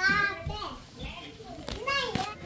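Children's voices: a high-pitched child's call at the start, quieter chatter, then more voices near the end.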